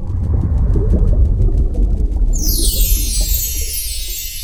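Sound design for an animated logo sting: a loud, deep rumble with fast ticking above it. A little over two seconds in, a bright shimmering chime joins it.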